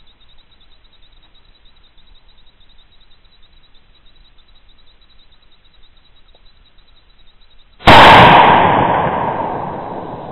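A single loud hunting rifle shot close to the microphone nearly eight seconds in, following faint woodland quiet; the report decays slowly in a long echo rolling through the forest.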